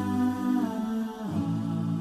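A cappella devotional song (nasheed): layered voices humming sustained chords over a low drone, moving to a new chord about a second in.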